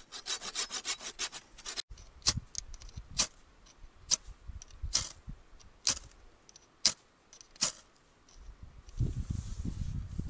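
Folding hand saw cutting small sticks with quick strokes. After a break, sharp clicks come about once a second as the wood is handled at the stove, and a low rustling sets in near the end.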